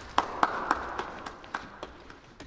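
Scattered applause from a few people clapping, loudest in the first second and then thinning out.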